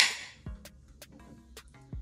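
Carbonated energy drink can just cracked open: a hiss that fades over the first half second, then faint scattered crackles of the drink fizzing. Faint music plays underneath.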